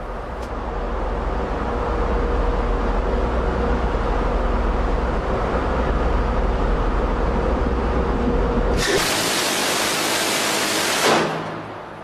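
Phalanx CIWS 20 mm six-barrel rotary cannon firing one continuous burst of about two and a half seconds, a dense ripping roar that starts suddenly about nine seconds in and stops just after eleven. Before the burst there is a steady low rumble of wind with a faint hum.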